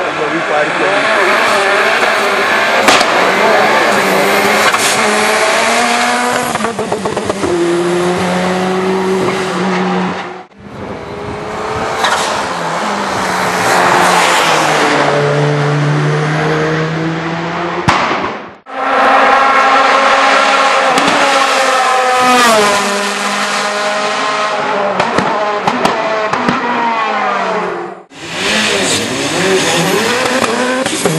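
Hill-climb race cars accelerating hard up the course, engines revving high and rising and falling through gear changes, with sharp exhaust backfire bangs. Several separate passes, each cut off suddenly.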